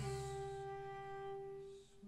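Cello and other bowed strings holding long, steady low notes in classical chamber music. The notes fade away near the end.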